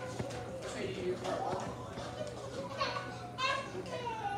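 Children's voices and a woman talking in a room, with music playing in the background.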